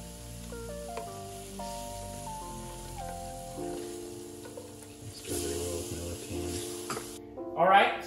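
Background music, a melody of held notes, over the sizzle of a spiced onion-tomato masala frying in a pan as yogurt is stirred into it. The sizzle cuts off abruptly near the end.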